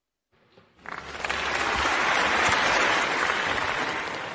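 Audience applauding: it begins about a second in, swells to a steady level and fades away near the end.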